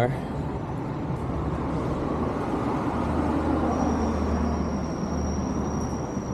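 City street traffic noise: a steady hum of passing vehicles, with a low engine rumble swelling in the middle and a thin high whine coming in about halfway through. Voices murmur in the background.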